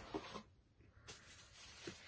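Faint rustling and small scraping sounds of a package being opened and handled, with a thin papery hiss from about a second in.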